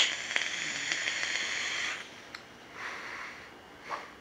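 A click, then an e-cigarette's rebuildable dripping atomizer (a Bonza RDA) firing for about two seconds as it is drawn on: the coil hisses and sizzles through freshly dripped, wet cotton. About three seconds in comes a softer hiss of the vapour being breathed out.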